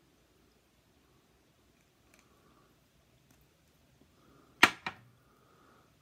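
Two sharp clicks about a quarter of a second apart near the end, as a small bottle is handled at the glass. Before them there is only faint room tone with a few light ticks.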